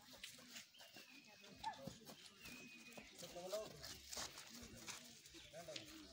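Faint, indistinct children's voices talking and calling across an open field, with soft scattered knocks and a thin high note lasting about two seconds.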